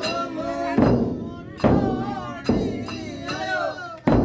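Chang frame drums struck by hand in a steady rhythm, a heavy stroke a little more often than once a second with lighter strokes between, while men's voices sing over the beat.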